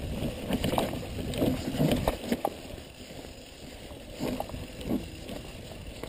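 Mountain bike rolling down a dirt forest trail: a steady tyre-and-wind rumble with frequent rattles and knocks as the bike jolts over bumps and roots. It is busiest and loudest in the first couple of seconds, calmer after, with a few more knocks near the end.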